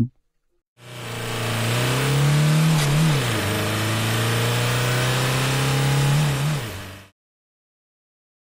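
Car engine sound effect of a car pulling away. The engine fades in and revs up with climbing pitch, drops back briefly about three seconds in, then runs steadily before a last rise and fall. It fades and cuts off suddenly about seven seconds in.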